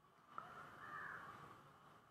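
Near silence, with a faint click and then one faint, distant animal call about a second long.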